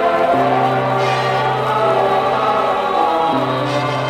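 Orchestral music with a choir holding long sustained chords over a steady low bass note. The harmony shifts shortly after the start and again about three seconds in.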